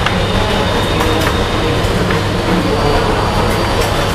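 Steady low hum and noise of the room's background, with a few faint light taps of chalk on a chalkboard.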